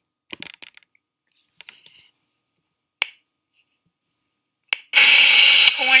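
A few short, sharp computer clicks, then about five seconds in a documentary soundtrack of music comes in loud.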